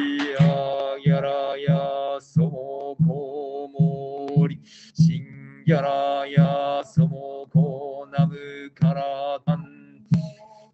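Soto Zen sutra chanting in a male voice, held mostly on one pitch with brief breaks for breath. The chant is kept in time by evenly spaced knocks of a wooden fish drum (mokugyo), a little under two strokes a second.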